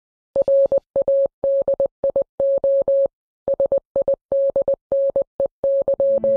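Morse code beeps: a single steady mid-pitched tone keyed on and off in a rapid, irregular pattern of short and longer beeps.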